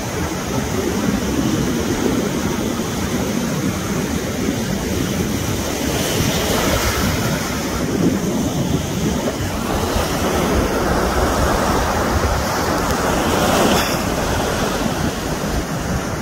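Wind rushing over the microphone with the steady wash of ocean surf behind it, swelling and easing a little without any pattern.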